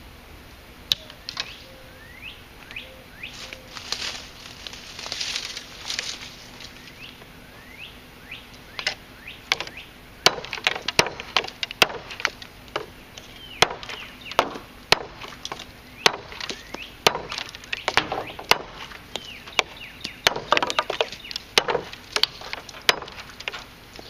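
A Brightleaf chopper knife chopping through thin, dry hardwood sticks on a wooden block. In the second half it strikes in a quick run of sharp chops, about one or two a second. Birds chirp in the first half, when there are only a few knocks.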